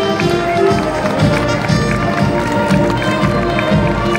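Parade march music playing steadily, over the shuffling footsteps of a column of marching students and a murmuring crowd of onlookers.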